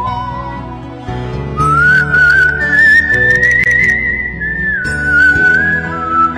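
A whistled melody with vibrato over a soft instrumental backing track. Its long held notes climb higher about two seconds in and step back down near the end.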